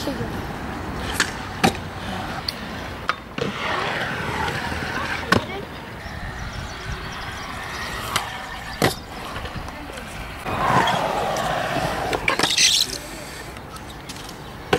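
Stunt scooter wheels rolling across concrete skatepark surfaces, rising into two longer rolling swells, with several sharp clacks of the scooter knocking on the concrete.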